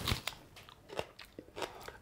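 A person biting into a raw onion and chewing it: a handful of short, crisp crunches spread over two seconds.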